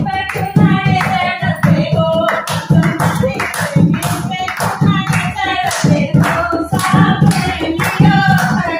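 Women singing a North Indian folk song to a dholak beat, with rhythmic hand clapping keeping time.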